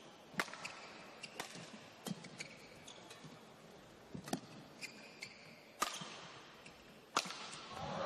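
Badminton rally: rackets striking a shuttlecock, about six sharp hits roughly a second apart, trading back and forth between the two players.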